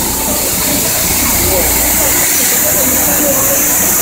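Steady hiss and low hum of a metro train standing at the platform with its doors open; the low hum drops away about two seconds in. Faint voices underneath.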